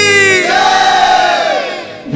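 A chorus of voices in a Bhojpuri patriotic song raises one long, crowd-like shout that rises and falls in pitch and fades out near the end.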